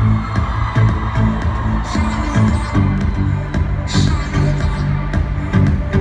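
Live pop music played loud through an arena sound system, heard from the audience: a steady beat with a held bass line in an instrumental passage without singing.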